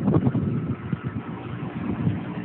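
Water running out of a community water fill station's hose, a steady rushing noise, with wind buffeting the phone's microphone.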